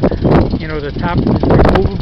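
A man talking, with a steady low rumble underneath.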